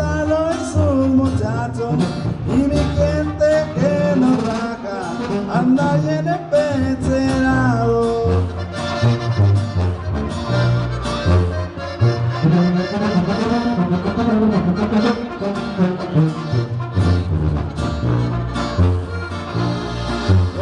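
Live norteño band playing an instrumental break: accordion and brass carrying the melody over a pulsing tuba bass line, with acoustic guitar.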